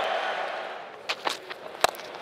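Stadium crowd noise dying away, then near the end a single sharp crack of a cricket bat striking the ball, with a few faint clicks just before it.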